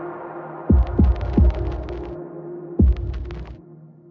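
Future garage track in its closing bars: deep kick drums that drop in pitch, three close together about a second in and one more near three seconds, with sparse hi-hat ticks over a held synth note. The sound thins out and drops away toward the end.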